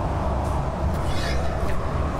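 Steady low roar of a glassblowing hot shop's gas-fired furnace and glory-hole burners, unchanging while a glass bubble is being blown.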